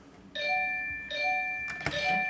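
Electronic chime from a Wish Upon a Leprechaun slot machine, a ding-dong of held tones sounded twice, about three quarters of a second apart, as autoplay is set going. A sharp click comes just before the end.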